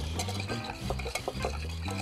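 Wire whisk beating a liquid marinade in a glass baking dish: quick clinks and scrapes of the wires against the glass, about six a second.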